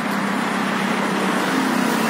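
Road traffic passing, a steady rush of engines and tyres, with a low engine hum growing as a car draws near toward the end.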